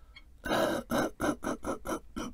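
A man coughing in a fit: one long cough about half a second in, then a rapid run of short coughs, about five a second.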